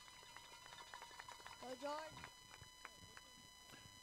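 Near silence, with a faint distant voice calling out briefly about two seconds in.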